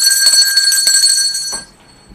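Small metal handbell shaken rapidly: a high, bright ring with a fast rattle of strikes that stops abruptly near the end, leaving a faint fading tone.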